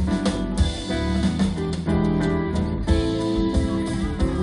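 A live band playing up-tempo dance music, with guitar, bass notes and a drum kit keeping a steady beat.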